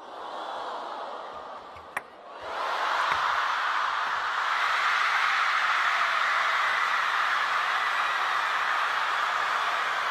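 Crowd cheering and applauding, swelling about two and a half seconds in and then holding steady and loud; a single sharp click about two seconds in.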